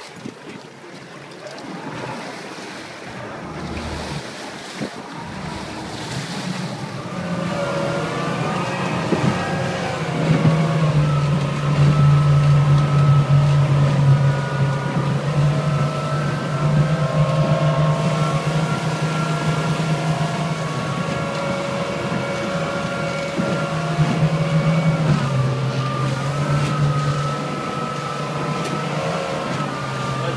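Outboard motor driving a RIB across choppy sea, with wind and rushing water. After a few seconds of mostly wind and water noise, the engine's steady note comes up and grows louder about ten seconds in, then holds as the boat runs at speed.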